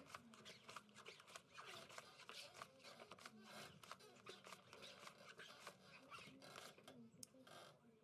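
Faint, rapid clicks and rustles of playing cards being slid out of a dealing shoe and laid down on the felt table.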